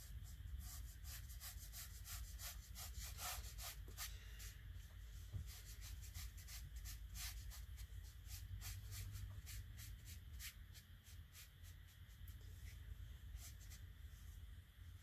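Faint brush strokes of a round watercolor mop brush on 100% cotton watercolor paper: a quick, irregular run of light scratchy strokes, thickest in the first few seconds.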